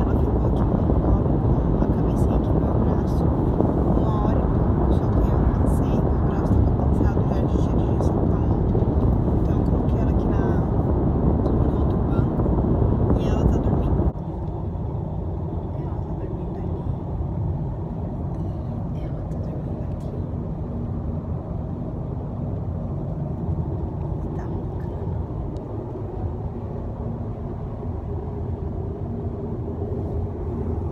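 Road and wind noise inside a moving car's cabin, a loud steady rush that drops suddenly to a quieter cabin hum about halfway through.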